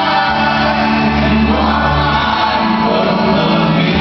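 Church choir and lead vocalists singing a gospel worship song, backed by a live band with drums, guitars and keyboards, with a sustained bass line underneath.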